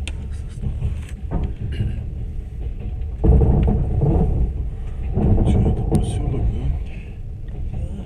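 Moving train heard from inside the carriage: a steady low rumble of wheels on the rails, swelling louder twice around the middle.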